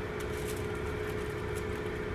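Steady machine hum with one held tone and a low rumble, with faint light ticks and rustles of ham slices being laid on a foil pan.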